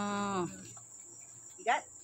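Steady, high-pitched drone of insects in the trees, running unbroken under a drawn-out spoken word that fades about half a second in and a short word near the end.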